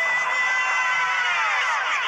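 Pop song music with one long held, voice-like note that slides down in pitch in the second half.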